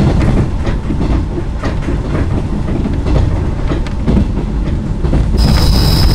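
Inside a KiHa 66 diesel railcar under way: a steady low rumble from the running train, with wheels clicking over the rail joints.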